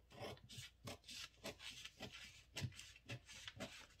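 Scissors cutting through pattern paper along a curve: a run of faint snips, roughly two or three a second.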